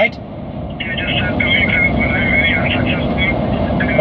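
A caller's voice coming thin and tinny through a phone's speaker, over a steady low rumble inside a vehicle cabin.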